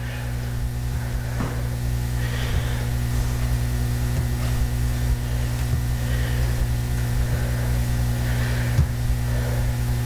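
Steady low electrical-sounding hum holding one unchanging pitch throughout, with a few faint soft taps scattered through it.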